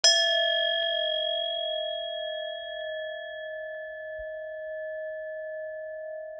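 A single struck bell-like metal tone rings out at the start. Its high overtones die away within a couple of seconds, while the low tone keeps ringing and slowly fades.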